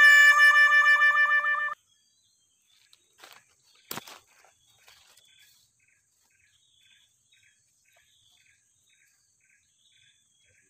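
A loud, reedy musical tone that steps down in pitch and then wobbles, cutting off suddenly before two seconds in. After it there is only faint, regular chirping and one sharp click about four seconds in.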